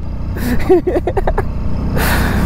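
Hero Splendor motorcycle's single-cylinder engine running steadily under way, with a low road and wind rumble. A short burst of voice comes about half a second in.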